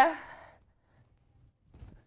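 A man's breathy exhale, like a sigh, trailing off the end of an excited shout. It fades within about half a second into near silence, with a faint low bump near the end.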